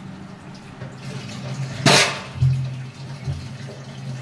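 Tap water running into a kitchen sink as utensils are washed by hand, with one sharp clatter of a utensil just before two seconds in and a couple of duller knocks after it.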